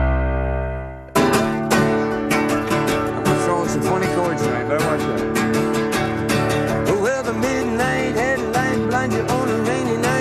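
A theme tune's last chord fades out, then about a second in acoustic guitars start playing a country song, with a man's singing voice entering about seven seconds in.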